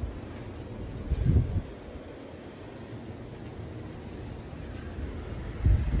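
Steady rush of central air conditioning blowing from a ceiling vent, with a ceiling fan running. Two brief low rumbles come through, about a second in and again near the end.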